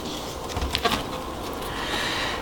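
A page of a hardcover picture book being turned: a soft paper rustle with a few light handling clicks over a steady background hiss.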